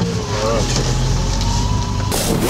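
A 4x4 vehicle's engine running steadily as it drives over sand, a low engine hum under a steady wash of tyre and wind noise. Faint thin tones waver and glide above it.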